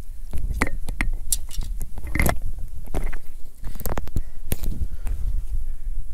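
Irregular clinks, cracks and knocks of ice chunks and trap hardware as a frozen mink is worked loose from a trap pole, the loudest about two seconds in, over the low rumble of wind on the microphone.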